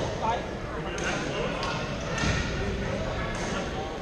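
Badminton hall ambience: many people's voices chattering in a large, echoing gym, with scattered sharp knocks of rackets hitting shuttlecocks and feet on the court floor.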